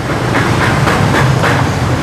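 Small underbone motorcycle engine running, a steady low hum with a quick, even clatter over it.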